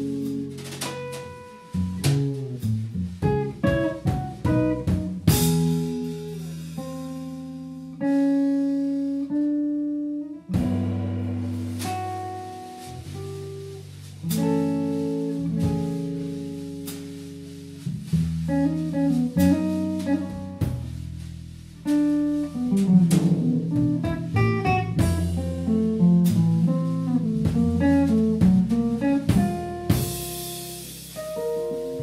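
Jazz trio playing a slow piece: a hollow-body electric guitar carries held chords and single melody notes over an upright double bass and drum kit. A cymbal wash swells up about five seconds in and again near the end.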